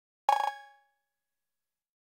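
A single short electronic percussion hit from a live-coded TidalCycles pattern of drum-machine and glitch samples: a bright, metallic ring that dies away within about half a second.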